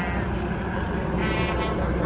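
Helicopter flying overhead, a steady low rumble, with faint crowd voices in the background.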